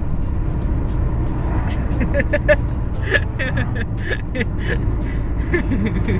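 Steady road and engine rumble inside a moving car's cabin. From about two seconds in, short choppy vocal sounds ride over it.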